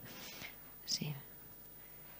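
A pause in speech: faint room tone with one short, quiet vocal sound from the speaker about a second in, like a whisper or breath.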